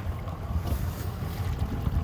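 Wind buffeting the microphone outdoors, a low, unsteady rumble with no distinct events.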